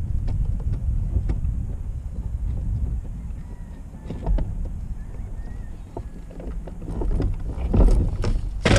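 Wind rumbling steadily on the microphone in a fishing kayak on open water, with small scattered knocks from the boat and a louder knock just before the end.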